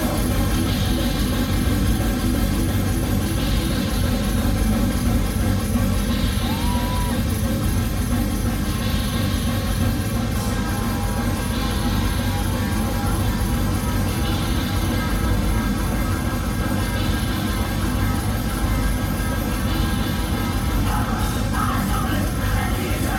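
Industrial metal band playing live with guitars and drums, heard through the PA from the crowd. A brighter accent recurs about every two and a half seconds.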